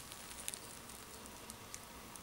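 Faint handling noise of a cardboard box held over bubble wrap: a few soft ticks over a low hiss.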